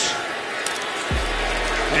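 Stadium crowd noise as a steady roar under a football broadcast, with background music underneath. A deep bass note slides down and then holds about a second in.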